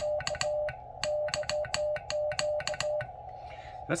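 Morse code hand-sent on an MFJ-553 straight key, heard as the Xiegu X6100 transceiver's CW sidetone: a steady mid-pitched beep switched on and off in dots and dashes, with a click at each press and release of the key. The sending stops about three seconds in.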